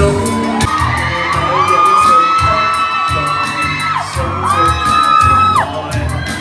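Pop backing music with a steady beat, over which audience members let out long, high-pitched screams: one lasting a few seconds, then a shorter one near the end.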